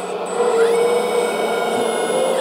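The electric-motor-driven hydraulic pump of a 1/10 scale RC bulldozer running with a steady whine. It rises in pitch and gets louder about half a second in, then holds steady as it builds about 5 MPa of oil pressure.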